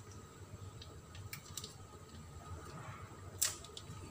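Light handling of a plastic seasoning packet over a cooking pot: a few faint clicks and crinkles, with one sharper click about three and a half seconds in.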